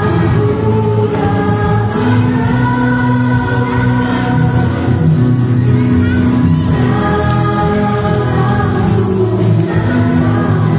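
Music: a Christian song with group singing over a steady accompaniment, playing loud without a break.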